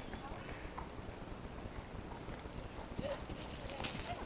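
A horse's hoofbeats on a sand arena, the repeated dull strikes getting louder after about three seconds as the horse comes near.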